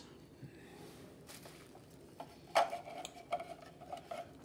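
Light clicks and knocks of hard 3D-printed model parts being handled. The loudest knock comes about two and a half seconds in, followed by a few smaller clicks.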